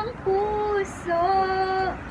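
A woman singing two long held notes in turn, unaccompanied.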